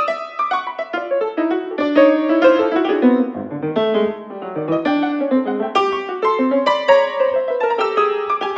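Baldwin grand piano played solo, a busy passage of many quick notes over moving chords.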